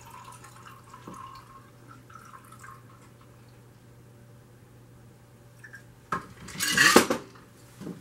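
Mixed cocktail poured from a metal shaker into a glass, a faint trickle of liquid over the first few seconds. About six seconds in, a loud clatter of glassware and metal handled on the bar counter, with a short knock near the end.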